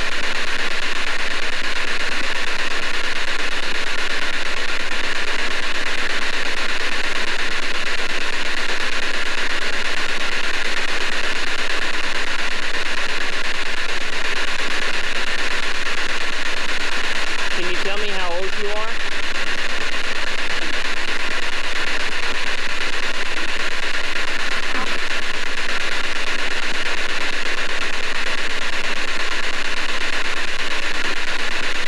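P-SB7 spirit box scanning radio stations and played through a portable speaker: a steady hiss of radio static with voice-like broadcast fragments, and a short wavering snippet about eighteen seconds in.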